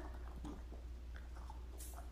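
Faint wet squelching of cooked spaghetti in tomato sauce in a steel pan, with a few light clicks, over a low steady hum; a short hiss comes near the end.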